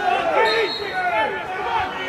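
Several men's voices shouting and calling over one another without clear words: football players and spectators during play.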